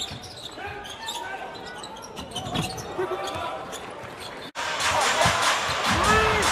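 Basketball being dribbled on an indoor hardwood court, the bounces heard as short knocks over voices in the arena. The sound drops out for an instant about four and a half seconds in, and louder arena noise follows.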